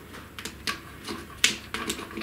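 Plastic cable drag chain on a CNC router being handled: a few sharp plastic clicks and rattles as the cable is slid into the chain and its links are clipped back in, the loudest click about one and a half seconds in.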